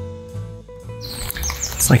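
Soft guitar background music trails off about a second in, giving way to outdoor rain ambience with birds chirping.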